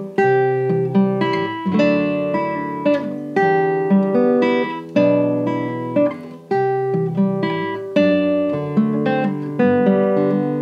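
Nylon-string classical guitar playing a traditional Manx tune slowly, as plucked chords and melody notes that each ring and fade before the next.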